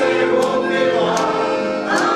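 A choir singing, several voices holding notes together in harmony and moving from chord to chord.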